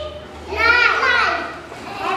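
Young children's voices: one high-pitched child's utterance, drawn out from about half a second in, with no clear words.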